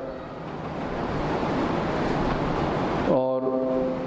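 Steady rushing background noise with no rhythm or pitch, filling a pause in a man's speech over a microphone. His voice comes back about three seconds in, on a drawn-out syllable.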